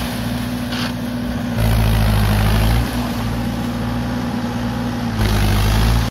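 Tractor engine running steadily as it works through a flooded paddy field on cage wheels, getting louder twice, for about a second near the middle and again near the end.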